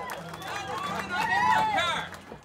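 People's voices, speech-like, with pitch sweeping up and down, louder a little past the middle.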